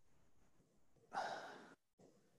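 A person's short exhale, like a sigh, close to the microphone about a second in, over faint room noise, then a brief drop to dead silence.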